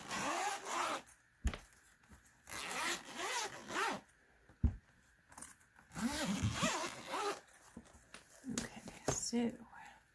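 Zippers of a large four-zipper pencil case being unzipped in several long strokes, one zipper after another, with a couple of sharp clicks between them.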